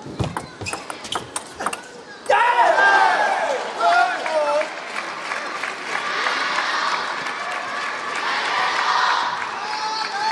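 Table tennis ball clicking off bats and table in a quick rally for about two seconds, then a sudden burst of shouting and cheering with applause from the crowd and team bench as the point is won, going on to the end.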